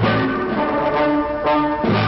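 Orchestral music with brass playing held chords that change a few times.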